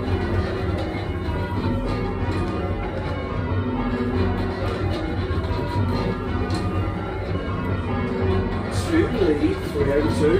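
A ring of eight church bells rung full circle from the ringing chamber, in call changes: a continuous, even stream of overlapping bell strokes. A voice is heard briefly near the end.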